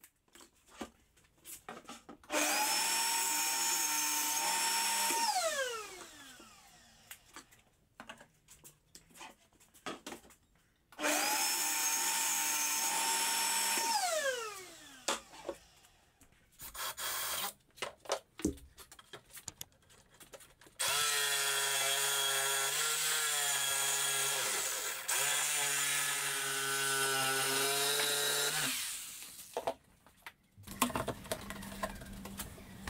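A Metabo TS254 table saw is switched on twice, each time running for about three seconds with a high whine, then switched off, its pitch falling as the blade spins down. Later a lower-pitched power tool runs for about eight seconds, its pitch sagging once near the middle.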